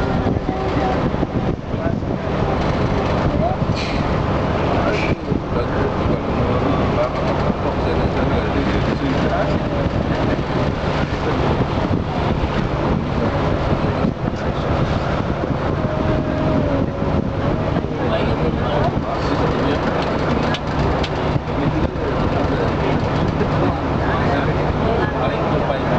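Ferry's engine running at a steady cruise, a constant low drone with an even hiss of wind and water above it.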